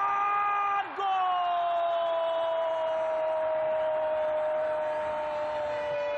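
Football commentator's drawn-out goal call. A short held shout is cut off after under a second, then one long call of about five seconds follows, its pitch slowly falling, announcing a goal.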